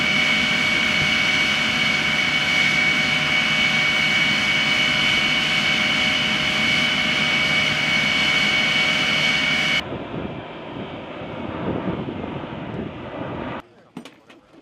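Jet aircraft engine running steadily on the ground, a loud rush with a high, even whine. About ten seconds in, the whine drops out and a duller rumble is left, which cuts off shortly before the end.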